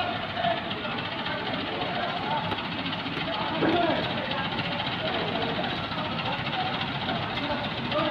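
Diesel engine of a backhoe loader running steadily at a demolition, mixed with indistinct voices of people talking.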